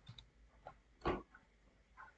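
A few faint, short computer keyboard keystrokes, one a little louder about a second in, as text is edited.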